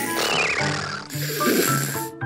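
Cartoon snoring sound effect: a wavering whistle sliding down in pitch, then a rasping snore, over light background music.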